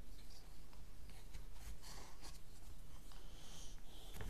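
Light scraping, rustling and small clicks of cardboard pieces being handled and slotted together: sweeper bars pushed into the slots of a cardboard wheel.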